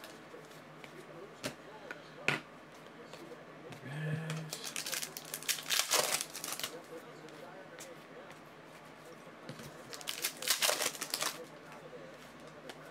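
Foil trading-card pack wrappers crinkling and tearing as the packs are handled and opened, in two main bursts, about halfway through and again near the end, with a few sharp clicks before them.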